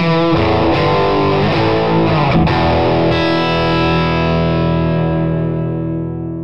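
Distorted electric guitar, a 1997 Gibson Les Paul Classic Plus with Lollar pickups played straight into a Line 6 Toneport UX1 modeller with no amp, running a fast lick of quick single notes. About three seconds in she stops picking and lets the last notes ring out, slowly fading.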